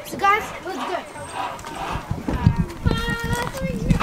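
Children's voices calling out on a playground, with a run of irregular thumps and knocks in the last two seconds from climbing over the play structure and handling the camera.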